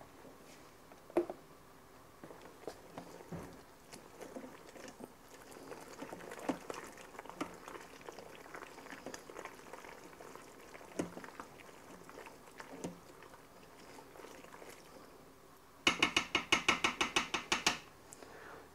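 A utensil stirring cooked pasta in a stainless-steel Instant Pot inner pot: faint, scattered scrapes and clicks, then near the end a louder, quick run of metallic strokes, about seven a second, against the pot.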